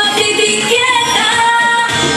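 A woman singing live into a microphone in vallenato style, holding long notes, with accordion accompaniment.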